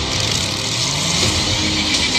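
Motorcycle and car engines revving in a film chase scene, the engine pitch sliding up and down under a loud, dense mix of effects noise.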